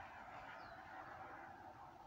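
Near silence: faint room tone, with one brief, faint, high chirp less than a second in.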